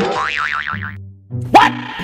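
Cartoon-style comedy sound effect: a wobbling spring "boing" lasting about a second, followed about a second and a half in by a quick rising swoop.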